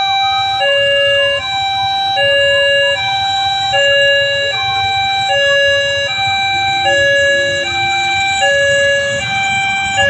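Railway level-crossing warning alarm sounding a steady two-tone electronic chime, alternating a low and a high note, each held a little under a second, as a train approaches. A low rumble from the oncoming diesel locomotive grows near the end.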